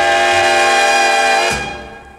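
The band's final held chord at the end of a 45 rpm record. The chord is sustained, then cut off with a last accent about one and a half seconds in, and it dies away.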